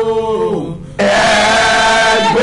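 A man and a woman singing a worship song together. Their held note slides down and fades out before halfway, there is a brief pause, and they come back in on a loud held note about a second in.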